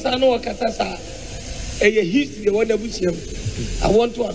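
Speech only: a voice talking in short phrases with pauses, over a steady background hiss.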